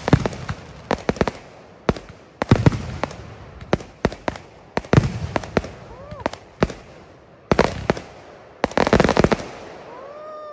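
Fireworks finale: aerial shells bursting in quick volleys of sharp bangs with crackle, coming in clusters. The densest, loudest volley comes about nine seconds in.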